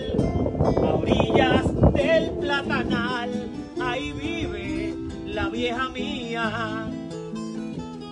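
Puerto Rican cuatro and acoustic guitar playing a seis instrumental interlude between sung verses. It opens with about two seconds of loud, full strumming, then thins to lighter plucked melodic lines.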